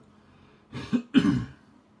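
A man clearing his throat in two short bursts about a second in, the second one louder.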